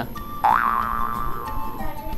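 A cartoon-style 'boing' comedy sound effect: a pitched tone jumps up about half a second in, then glides slowly down for about a second and a half, over quiet background music.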